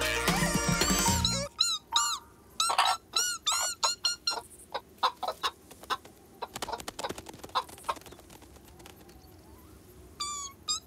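Loud cartoon music cuts off about a second and a half in. A flock of hens then clucks in a quick run of short, arched calls for about three seconds, followed by scattered soft taps that die away.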